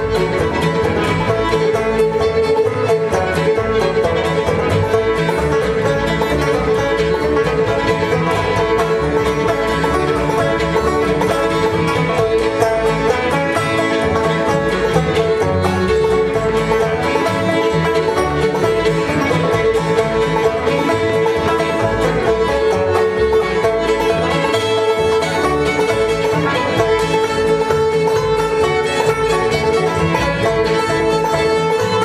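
Old-time string band playing a lively tune: clawhammer banjo and fiddle, at a steady, even level.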